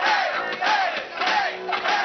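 Live punk-rock band playing with shouted vocals, the crowd yelling along in a repeated chant of about two to three shouts a second.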